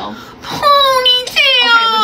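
A high, child-like voice crying out twice in long wails, each falling in pitch.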